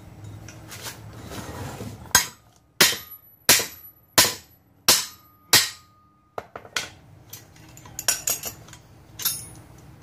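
Hammer blows on a steel plate clamped on an anvil, bending a homemade C-notch bracket: six hard strikes about two-thirds of a second apart, each ringing briefly, starting about two seconds in. Lighter metal clinks and taps follow.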